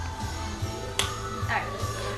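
Music playing from a home stereo, with a steady pulsing bass line; a single sharp click about a second in.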